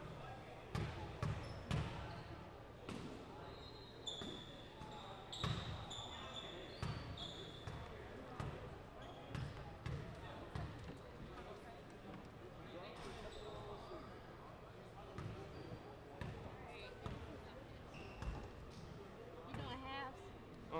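Basketball bouncing on a hardwood gym floor, in irregular single bounces and short runs of dribbling, with a few short high-pitched squeaks in the middle.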